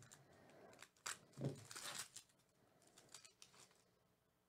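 A Topps Star Wars trading-card pack's foil wrapper being torn open and handled, with a few faint short rips and crackles. The clearest come about a second in and again between one and a half and two seconds.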